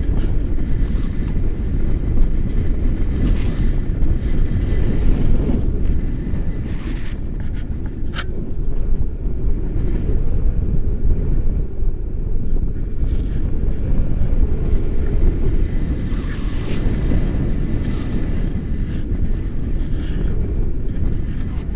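Wind buffeting the microphone of a selfie-stick action camera on a paraglider in flight: a loud, steady low rumble, with a single sharp click about eight seconds in.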